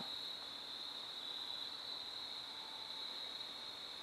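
Crickets chirring in a steady, high-pitched chorus.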